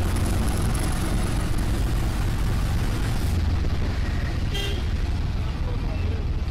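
Auto-rickshaw engine running steadily with road traffic noise, and a vehicle horn honking briefly about four and a half seconds in.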